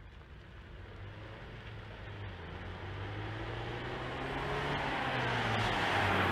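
A 2016 Ford Focus RS with its 2.3 EcoBoost turbocharged four-cylinder engine drives toward the listener and passes, the engine running at an even pitch and growing steadily louder. Tyre hiss on the wet road swells as it reaches the microphone near the end.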